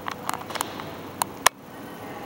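A run of light clicks and taps, then a single sharper click a little after a second and a loudest one about one and a half seconds in, after which the background hiss drops abruptly.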